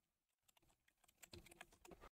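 Faint computer keyboard typing: a short run of keystrokes starting a little over a second in, as a password is typed at a terminal prompt.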